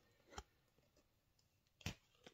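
Small cardboard jewelry box being opened, mostly near silence: a faint tap less than half a second in, then a sharper click near the end as the lid comes off.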